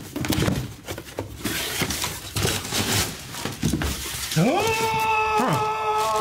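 Rustling and handling of a cardboard box and a plastic bag as a package is unpacked. About four seconds in, a louder high, drawn-out cry-like sound comes in; it rises steeply, then holds its pitch.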